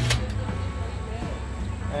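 A single sharp metal click as the Akorn kamado's bottom draft vent is slid shut, followed by a quieter steady background.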